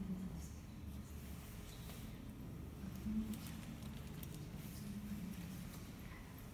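Faint background room sound: a low steady hum with an indistinct distant murmur and a few light clicks.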